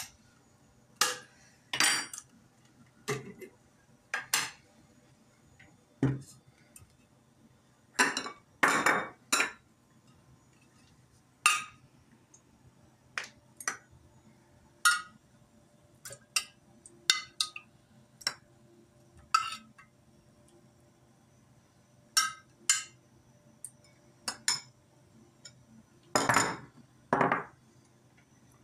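A metal spoon clinking and scraping against ceramic bowls and a yogurt jar as thick yogurt is scooped and served: scattered short, sharp clinks and knocks, with a few heavier knocks around a third of the way in and near the end.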